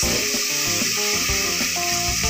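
Background instrumental music of short held notes, over a steady sizzle of curry leaves and ginger-garlic paste frying in oil as they are stirred with a spoon in an aluminium pressure cooker.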